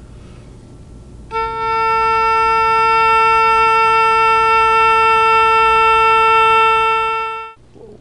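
An oboe playing a single long held A, starting about a second in and stopping cleanly shortly before the end. The student is holding the note as a vibrato exercise.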